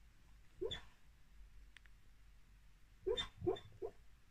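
A small dog on a bed making short, sharp, hiccup-like sounds: one about half a second in, then three in quick succession near the end.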